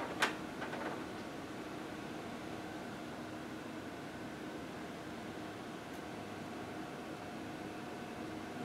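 Steady fan-like machine hum with faint steady tones running through it, after a single sharp click a quarter of a second in.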